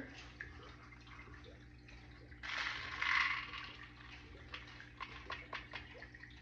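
Scented aroma beads poured out of a mold into a plastic cup: a rattling rush starting about two and a half seconds in and lasting about a second, then scattered small ticks as beads settle, over a steady low hum.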